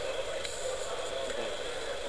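Steady room noise and hiss, with a single faint key click about half a second in: Ctrl+J being typed on a vintage terminal keyboard to send a line feed.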